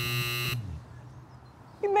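A harsh electronic buzzer sounding for about a second and cutting off about half a second in, over a low hum.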